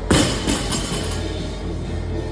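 A barbell loaded with rubber bumper plates is dropped from hip height onto a rubber gym floor. It lands with one heavy thud just after the start, then gives a couple of smaller bounces. Background music plays underneath.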